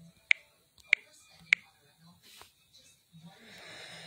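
Three sharp taps on a smartphone touchscreen, about 0.6 s apart, as invites are sent one after another, followed by a soft hiss near the end.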